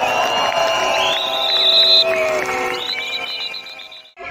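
Rally crowd noise with many long whistle tones sounding at once at different pitches, one rising to a high shrill note and held for about a second. It fades away near the end.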